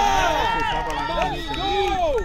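Several quadball players shouting and calling out at once, one voice holding a long high call for over a second before others break in with short rising-and-falling shouts.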